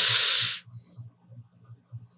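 A man's breathy exhale close to the microphone, a short loud sigh that stops about half a second in, while he pauses to think. After it, the room is very quiet.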